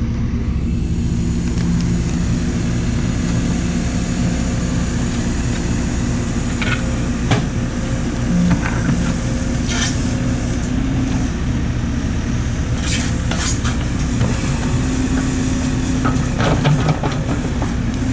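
JCB backhoe loader's diesel engine running steadily while its rear excavator bucket digs in soil, with a few short sharp knocks scattered through.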